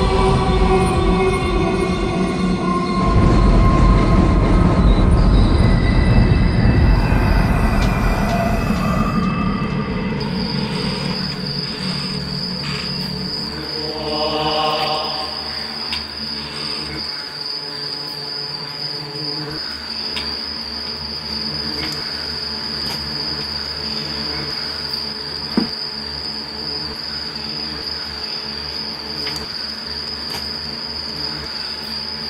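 Horror-film sound design: eerie held music tones swell into a loud rushing surge, then give way to a steady high-pitched whine over a low hum. A brief ringing tone comes about halfway through, and a single sharp click comes near the end.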